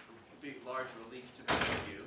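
A few quiet spoken words, then about one and a half seconds in a short, loud burst of noise lasting under half a second, the loudest sound here.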